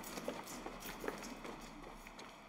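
Running footsteps of sneakers on a concrete pavement: quick, evenly spaced steps, about five a second, growing fainter as the runner moves away.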